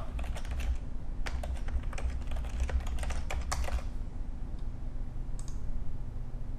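Typing on a computer keyboard: a quick run of keystrokes for about four seconds as a server name is entered, then a brief click near the end.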